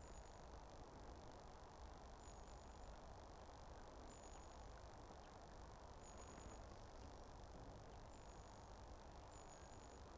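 Near silence: a faint steady hiss, with a short, faint, high-pitched peep recurring about every two seconds.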